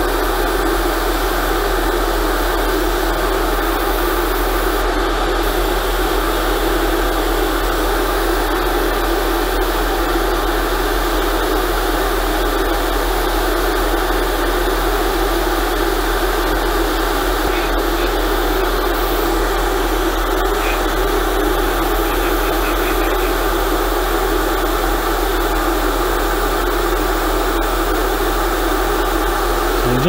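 Airbrush spraying: a steady, unbroken hiss of compressed air with a low hum beneath it.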